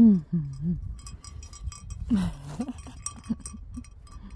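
Small metal bell clinking irregularly, as from a bell on a goat moving about, with a short call about two seconds in.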